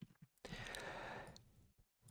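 A faint breath, a soft sigh into the microphone, lasting about a second in an otherwise near-silent pause.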